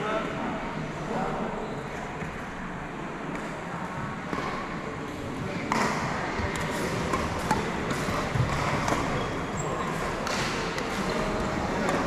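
Background chatter of indistinct voices in a sports hall, with a few sharp knocks in the second half.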